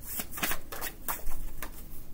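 A deck of reading cards being shuffled and handled by hand: a quick, irregular run of papery flicks and snaps, several a second.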